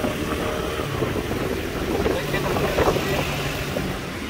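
Motorcycle engine running at low speed, with wind noise on the microphone.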